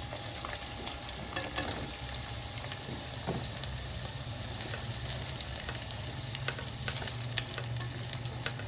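Sliced bitter gourd (karela) sizzling as it fries in hot oil in a metal karahi, a wooden spoon stirring through it. A steady sizzle with scattered crackles, over a low steady hum.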